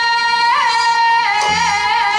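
Korean Seodo minyo folk singing: a woman holds one long high note, bending it briefly about half a second in, then dropping it slightly into a wavering vibrato past the middle. A low drum stroke falls about one and a half seconds in.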